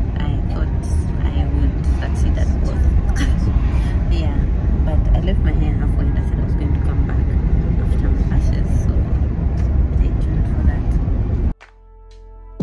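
Steady low road and engine rumble inside a moving car's cabin, cutting off abruptly near the end.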